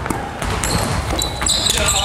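Basketball being dribbled on a wooden gymnasium floor, bouncing repeatedly, with sneakers squeaking on the court in the last half second or so.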